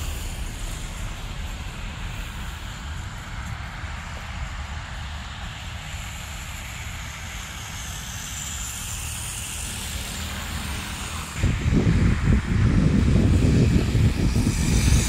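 Wind rumbling on the microphone in blowing snow, steady at first, then turning abruptly into heavy, irregular buffeting about eleven seconds in.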